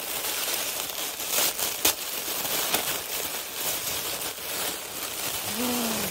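Tissue paper crinkling and rustling steadily as it is unwrapped from a crocheted toy, with a few sharper crackles in the first half.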